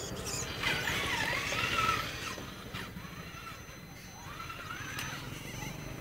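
Traxxas Summit 1/10-scale electric RC truck's motor and gear drivetrain whining, the pitch wavering up and down with the throttle as it crawls over rocks and dirt, in two stretches: about half a second to two seconds in, and again near the end.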